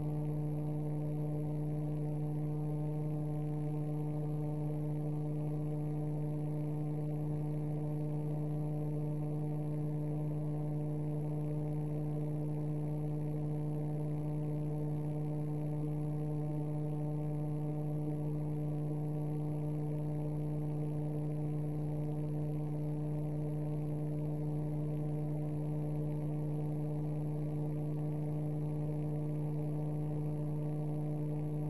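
Steady electrical hum: one low tone with a stack of evenly spaced overtones, holding constant with no other sound.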